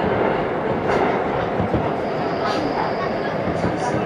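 Seoul Subway Line 1 electric train running through a tunnel, heard from inside the car: a steady, loud rolling rumble of wheels on rail, with a few short clicks.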